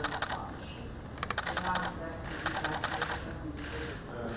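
Camera shutters firing in rapid bursts, about four bursts of fast clicks each lasting around half a second, over a faint voice in the room.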